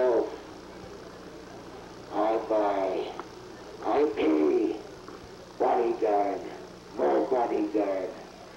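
A man's voice played back from an audio tape, speaking four short phrases one at a time with pauses of about a second between them, over a faint steady low hum.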